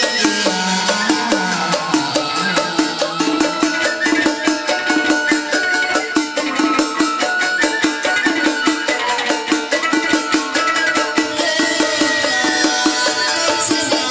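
Traditional Vietnamese chầu văn ritual music played live: a fast, steady clicking percussion beat under sustained melodic lines.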